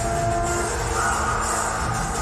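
Film soundtrack music played back through a multichannel home-theatre amplifier and its loudspeakers and subwoofer, heard in the room. It has sustained held notes over a strong, steady bass.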